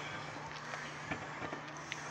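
Faint scraping and a scatter of small ticks from fingers picking at and breaking a soft plaster excavation block, its crumbs rattling on a paper plate, over a steady low hum.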